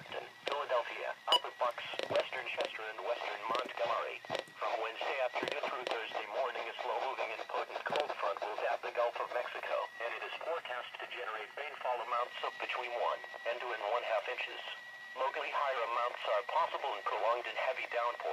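Only speech: a NOAA Weather Radio broadcast voice reading weather information through the small speakers of weather alert radios, the sound thin and boxy as from a radio.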